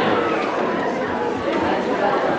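Many people talking at once: steady audience chatter in a large hall, with no single voice standing out.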